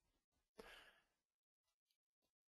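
Near silence, with one faint breath about half a second in.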